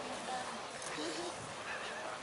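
A lull between shouted lines of a rugby team's haka, holding only faint voices and a few short faint calls.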